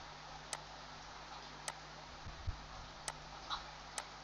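Four faint, sharp computer mouse clicks, spaced about a second apart, over a low steady hum.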